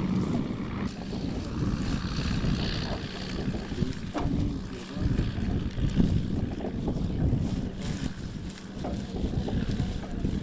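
Wind buffeting the microphone: an uneven low rumble that swells and eases throughout.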